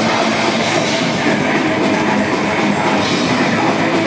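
Heavy metal band playing live at full volume: distorted electric guitars and a drum kit in a dense, unbroken wall of sound.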